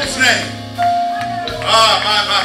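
Worship-band music led by an electric keyboard, with sustained bass notes and a single held note about a second in, while a man's voice comes in over it through the microphone at the start and again near the end.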